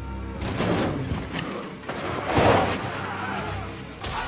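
Dramatic score from a TV battle scene, playing under battle noise: swells of clashing and clamour, the loudest about half a second in and about two and a half seconds in.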